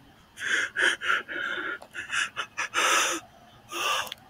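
A man breathing hard in quick, uneven, noisy gasps close to the microphone, about ten breaths in a row.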